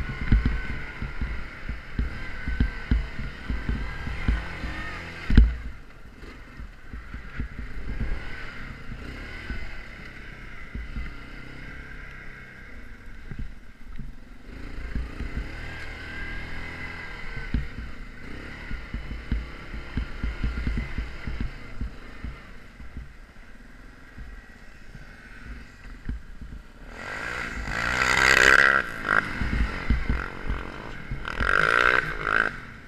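Yamaha Grizzly ATV engine running as the quad rides over packed snow, its note rising and falling with the throttle. A sharp knock about five seconds in, and a louder stretch near the end.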